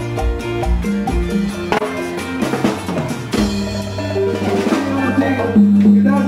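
Live band with drum kit and hand percussion playing loudly on stage. A steady beat runs for about two seconds, breaks into a run of percussion hits, then the band holds a long sustained chord.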